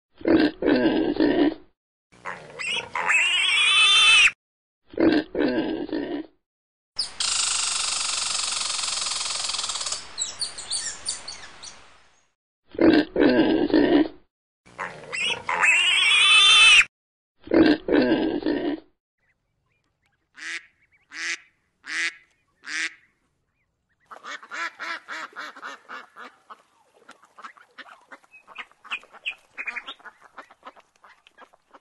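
Pigs grunting and squealing in loud separate bursts, with a longer, noisier squeal lasting about five seconds; the opening run of calls repeats partway through. After a pause come four short calls, then rapid duck quacking over the last six seconds.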